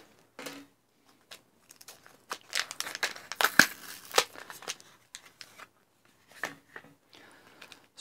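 A paper-backed plastic blister pack being torn and peeled open by hand. It crackles and crinkles densely from about two to five seconds in, then gives scattered crinkles near the end.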